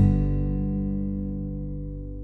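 Background music: a single guitar chord struck at the start and left to ring, fading away over two seconds.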